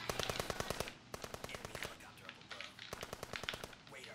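Video-game automatic gunfire: rapid bursts of machine-gun fire, about a dozen shots a second, the longest burst at the start and shorter ones after.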